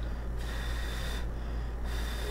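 A man blowing on a hot forkful of casserole to cool it: two breathy puffs about a second apart.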